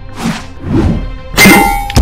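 Fight sound effects: two whooshes, then a loud metallic clang about a second and a half in that rings for about half a second, over background music.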